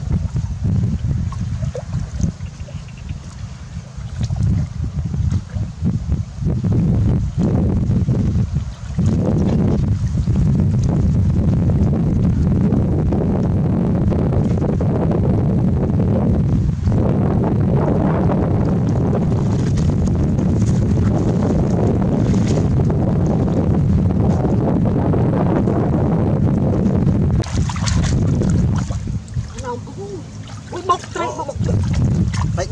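Wind buffeting the microphone: a heavy, rough rumble throughout, over the sound of water stirred by people wading in a shallow ditch, with a brief louder burst near the end.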